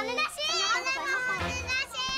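Young children's high-pitched voices, excited and wordless.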